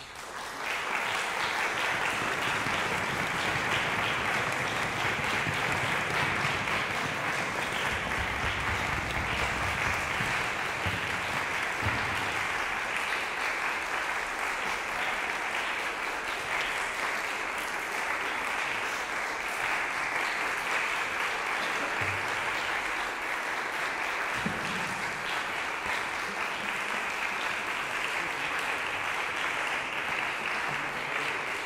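Audience applauding, breaking out right as the music ends and holding steady, with a reverberant hall sound.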